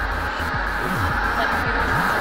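SpaceX Falcon 9 rocket engines at liftoff: a steady, dense low noise with no breaks, mixed with background music.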